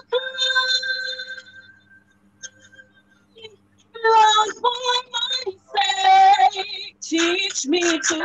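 A woman singing a gospel song solo. A held note fades out about two seconds in, there is a short pause, then she sings new phrases from about four seconds in.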